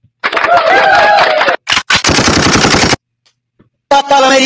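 Rapid gunfire in two loud bursts, about a second each, with a short crack between them and a wavering, pitched cry over the first burst; each burst cuts off abruptly.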